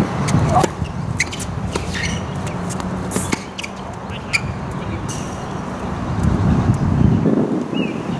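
Tennis rally: sharp racket-on-ball strikes and ball bounces, starting with a serve and with a loud hit about three seconds in. A steady low background rumble runs under them.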